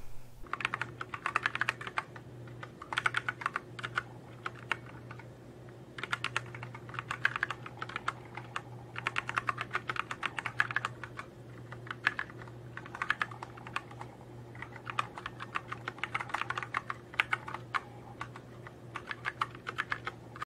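Typing on a backlit mechanical computer keyboard: rapid key clicks in bursts of a second or two with short pauses, over a steady low hum.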